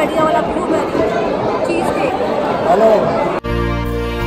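Crowd chatter in a busy restaurant dining hall, a babble of many voices. About three and a half seconds in it cuts off abruptly and is replaced by background music with sustained notes and a steady beat.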